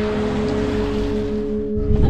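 A steady rushing noise, with background music of long held notes forming a chord.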